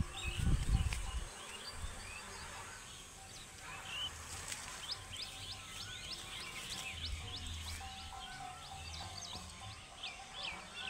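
Small birds chirping: many short, quick chirps that keep repeating and grow busier in the second half. A brief low rumble comes in the first second, and a faint steady tone runs underneath.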